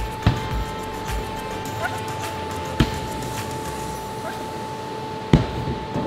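A hockey stick striking a ball three times, each sharp clack two to three seconds apart, over background music with steady held tones.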